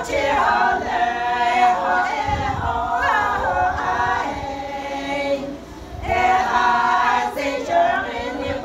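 A group of women singing a Naga folk song a cappella, several voices together in long held phrases. One phrase dies away about five and a half seconds in, and the next begins a moment later.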